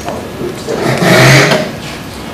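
A man's voice, indistinct, for about a second in the middle.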